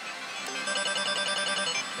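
Happy Juggler VIII pachislot machine's payout sound: a quick, evenly spaced string of electronic beeps starting about half a second in, as 10 credits are paid out for a lined-up clown (pierrot) small win.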